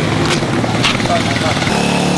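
Street noise: a motorcycle engine running steadily close by, with people's voices in the background and a few short clicks.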